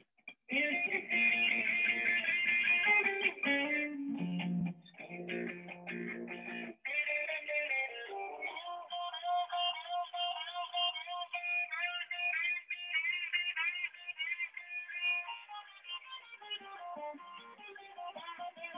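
Electric guitar playing: strummed chords starting about half a second in, a short passage of low notes, then from about seven seconds a single-note melody higher up with some notes sliding or bending in pitch. It sounds thin, heard through video-call audio.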